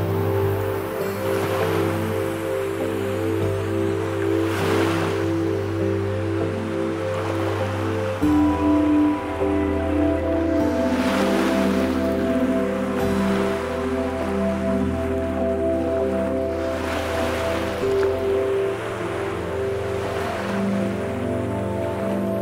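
Slow ambient music of long, sustained notes, changing chord about eight seconds in, layered over ocean waves washing in. The wave noise swells and fades about every six seconds.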